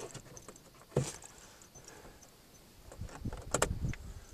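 Handling noises inside a car's cabin: a single sharp click about a second in, then a quiet stretch, then a cluster of clicks and light rattles near the end as switches, keys and the camera are handled.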